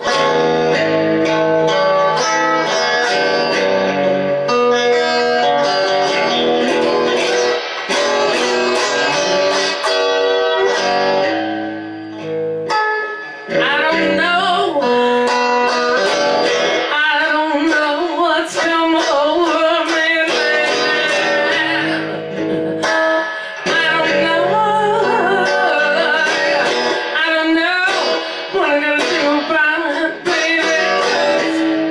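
A moody, bluesy song played live on an electric guitar. A woman's singing voice comes in over the guitar about halfway through.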